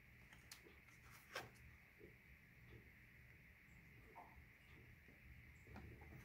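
Near silence with a faint steady hum, broken by a few soft ticks of tarot cards being handled and laid down on a table, the clearest about one and a half seconds in.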